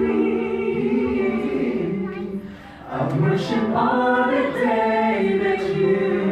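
A small mixed group of men and women singing a worship song in harmony into microphones, with a short break about halfway through before a higher sung line comes in.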